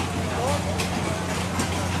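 Fairground background: a steady low machine hum, with faint voices and scattered clicks over it.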